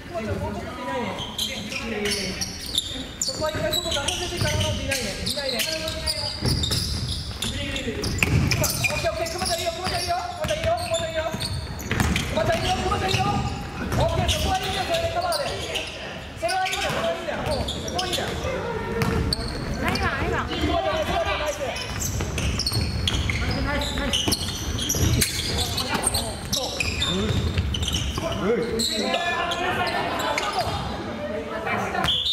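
Basketball bouncing on a wooden gym floor during play, with players' voices calling out, echoing in a large gymnasium hall.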